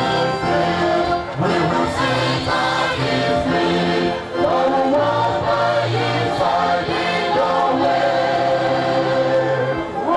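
Choir singing a gospel song in sustained, held chords over a steady low accompaniment.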